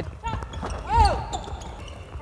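Basketballs bouncing on a hardwood court during practice drills, the heaviest thud about a second in, with a short shout at the same moment.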